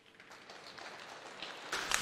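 Audience applause at the end of a figure skating program: the clapping starts faint and swells gradually.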